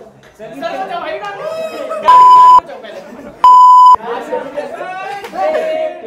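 Two loud, steady electronic beeps, each about half a second long and a second and a half apart, edited in as censor bleeps. Under and around them a group of young men chatters and shouts.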